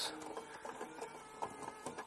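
Renault Espace IV's Cabasse six-CD changer head unit running its eject mechanism: a faint motor whir with a few light clicks as the selected disc is fed out of the slot.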